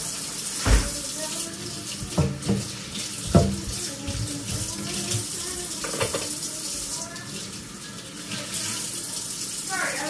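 Kitchen tap running steadily into the sink while dishes are scrubbed and rinsed, with a few sharp knocks and clatters of dishware being handled, the loudest about a second in and between two and three and a half seconds in.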